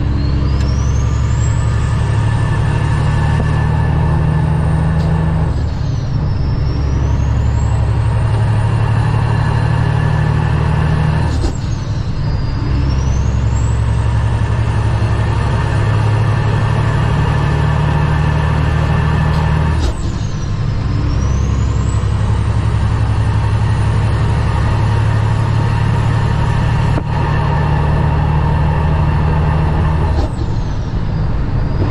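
Cummins ISX diesel of a 2008 Kenworth W900L running under load, heard from inside the cab as a steady low drone. A high turbo whistle climbs and holds, then drops away and climbs again at each gear change, about 6, 11 and 20 seconds in.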